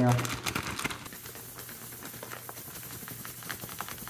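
A plastic baggie of powdered red star composition (strontium nitrate, magnalium, parlon and red gum) being shaken by hand to mix the dry ingredients. The bag gives an irregular run of crinkles and rustles that is busiest in the first second and sparser after that.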